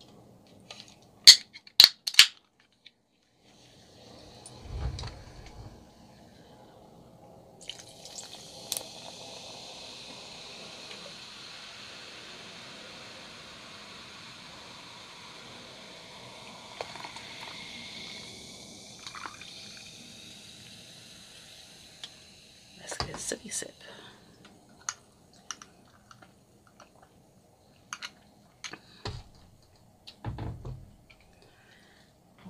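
A can of Sprite cracked open with a few sharp clicks, then the soda poured over ice in a glass: a long steady fizzing pour of about a quarter of a minute. It ends with several short clinks of ice and glass.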